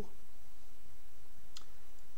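A single sharp computer-mouse click about one and a half seconds in, over a steady low background hum.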